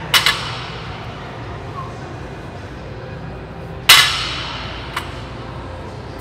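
Loaded barbell with weight plates set down on the gym floor between sumo deadlift reps: a sharp double clank just after the start and a louder one about four seconds in, each ringing briefly, with a small click about a second after the second one. A steady low gym hum runs underneath.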